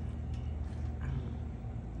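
Steady low background hum, with no distinct event standing out.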